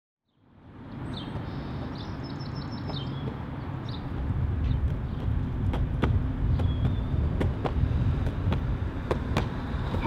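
Outdoor street ambience fading in: a low traffic rumble that grows louder about halfway through, with short high chirps in the first few seconds and a scatter of sharp clicks in the second half.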